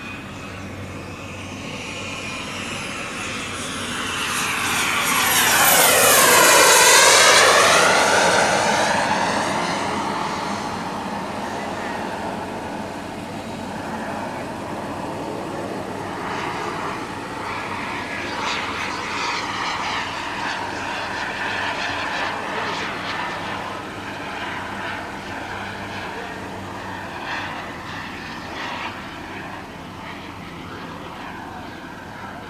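Miniature turbine engine of a radio-controlled model jet in flight: its whine and rush swell into a loud low pass that peaks about seven seconds in and falls away. The turbine then keeps running at a steadier level, rising and falling as the jet manoeuvres overhead.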